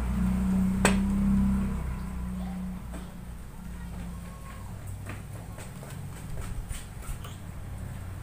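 Small handling sounds as parts of a homemade pop-pop boat are fitted into its clay hull: a sharp click about a second in, then faint taps and clicks, over a low hum that fades after the first few seconds.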